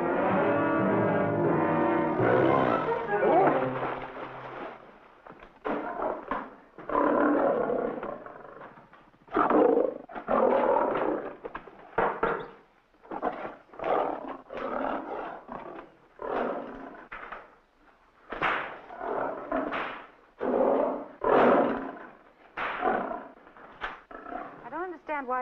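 A short burst of orchestral film music, then lions roaring and snarling over and over, a short roar about every second through the rest.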